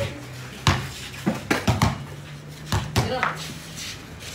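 A basketball bouncing on a concrete court as it is dribbled: about six sharp bounces at uneven spacing.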